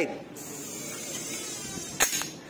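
Steady background hiss of room noise, with no distinct click or shot.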